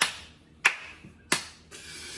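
Three sharp hand slaps, evenly spaced about two-thirds of a second apart, during a fit of laughter.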